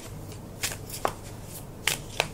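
A deck of tarot cards being shuffled by hand: soft papery card rustling broken by three short, sharp card clicks.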